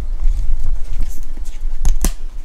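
Rumbling handling noise from a handheld camera being carried, with irregular footsteps and a sharp click near the end.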